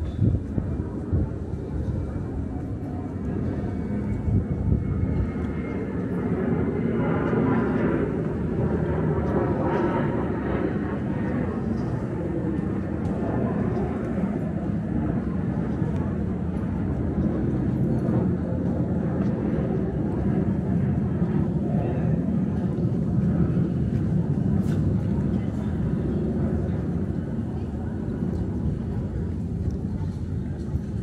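Town street ambience heard while walking: a steady low rumble with voices of people nearby.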